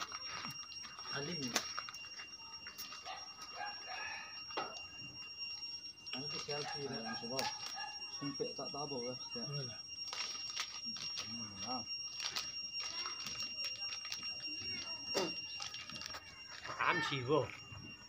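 People talking in bursts, with a cough about six seconds in, over a steady high-pitched whine that runs throughout.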